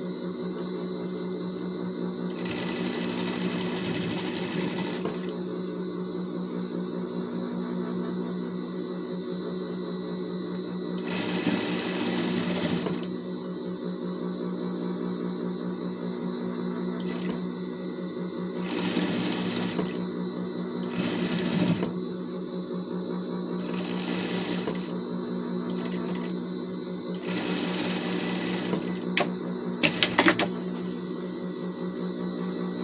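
Industrial straight-stitch sewing machine sewing a folded finishing seam through denim. It runs with a steady hum, in several louder stitching runs. A few sharp clicks come near the end.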